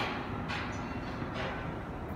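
Steady low outdoor rumble of background noise, with a few faint soft knocks about half a second apart near the start and one more a little later.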